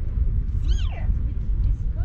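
A young goat bleats once, a high call that falls steeply in pitch, over a steady low rumble.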